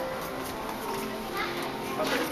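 Indistinct chatter of people, children's voices among them, over steady background music.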